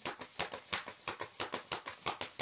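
A deck of tarot cards being shuffled by hand: a quick, even run of soft card slaps and flicks, about seven a second.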